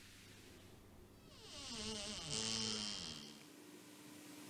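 A high, buzzing whine swells up about a second in and fades away before the end, with lower tones gliding downward beneath it: a suspense sound effect laid over the picture.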